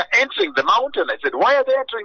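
Speech only: a voice talking without a break.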